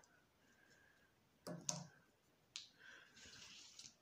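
Mostly near silence while fabric is handled, with two faint clicks about halfway through and a soft rustle of fabric being turned over and smoothed by hand near the end.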